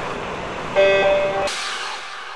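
Logo-sting sound design: a noisy rush fading away, with a short pitched chord that comes in about three-quarters of a second in and stops sharply half a second later, leaving a fading hiss.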